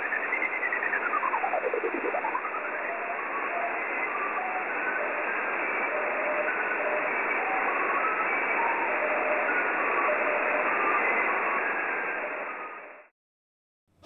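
Single-sideband receiver audio from a WebSDR: steady receiver hiss carrying the weak 10 GHz signal. First comes a single whistle that glides up, down and up again, then a string of short tones hopping from pitch to pitch, the Q65 digital-mode "bleeps and bloops". The hiss and tones stop abruptly about a second before the end.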